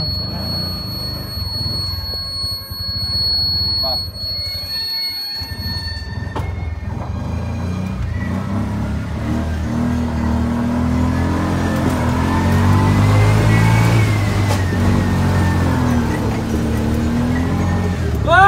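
Steady low rumble of a vehicle's engine and road noise heard from inside the cabin while it drives over a rough village street, with music playing along with it.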